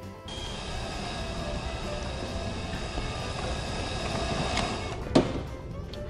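Small electric food chopper motor running steadily for about five seconds as it blends ingredients, then switching off, followed by a single sharp click.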